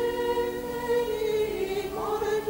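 Background choral music: voices hold one long chord, which shifts slightly in pitch near the end.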